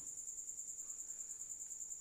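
Cricket chirping: a steady high-pitched trill of rapid, even pulses.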